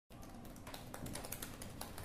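Typing on a laptop keyboard: a quick, uneven run of key clicks.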